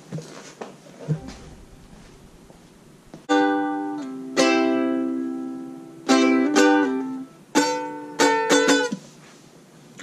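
Ukulele strummed: faint handling noise for the first three seconds, then two chords each left to ring and die away, then several quicker strums.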